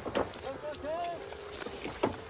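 Men's voices shouting in the distance during a military field exercise, faint and drawn out, with a sharp knock near the start.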